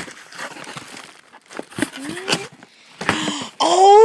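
Cardboard box being handled and opened: a click, then rustling and scraping of cardboard. There are a few short vocal sounds, and near the end a rising exclamation.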